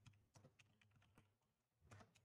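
Very faint typing on a computer keyboard: a scattered, irregular run of key clicks as a word is typed.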